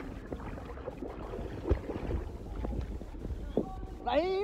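Swimming-pool water sloshing and splashing close to the microphone, with a steady low rumble of wind on the microphone and scattered small splashes and knocks.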